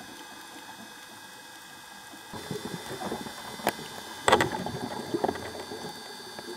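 Underwater recording of a scuba diver's exhaled bubbles from the regulator, bubbling up about two seconds in, with a few sharp clicks, the loudest about four seconds in.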